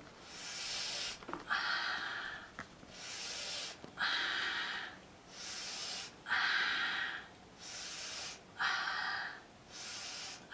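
A woman breathing in and out forcefully in a yoga breathing exercise: about four rounds of a sharp in-breath followed by a forceful out-breath, each breath about a second long.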